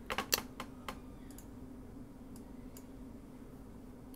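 Several quick clicks on a computer mouse and keyboard in the first second and a half, then two faint clicks, over a steady low hum.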